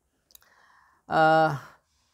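A faint mouth click and a soft intake of breath, then a man's short voiced syllable, the loudest sound here, lasting about half a second.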